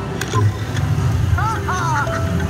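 Penny video slot machine being played: a click shortly after the start as a spin is set off, then a few quick electronic chirping tones that rise and fall near the end, over the steady low hum and chatter of a casino floor.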